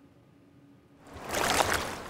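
A river in flood rushing past. It fades in about halfway through, after a second of near silence.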